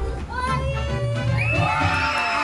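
A hall full of children shouting and cheering in excitement, with high-pitched screams swelling about a second and a half in, over a pop song playing.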